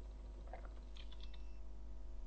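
Faint room tone with a steady electrical hum, and a few soft short clicks about half a second to a second and a half in.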